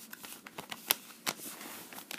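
Plastic Blu-ray case being handled, with a hand pressing on the disc in the open case: a run of light clicks and rattles, with one sharper click about a second in.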